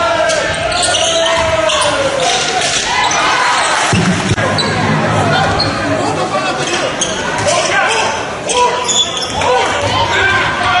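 Live basketball game in a large hall: many spectators talking and calling out, with a ball being dribbled on the court.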